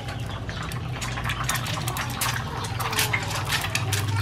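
A freshly cracked egg frying in hot oil in a pan, sizzling with dense crackles and pops that thicken after the first second or so.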